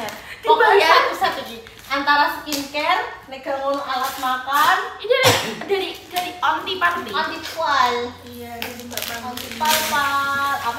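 Women talking throughout, with a few short, sharp handling noises in between.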